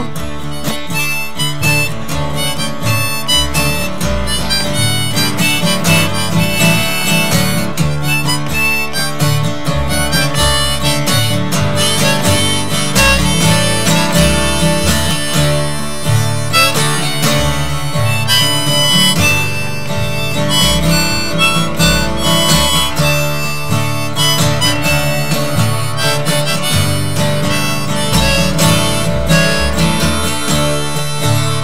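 Harmonica played on a neck rack, carrying the melody over a strummed acoustic guitar and a plucked upright double bass: an instrumental break between sung verses of a live folk-country song.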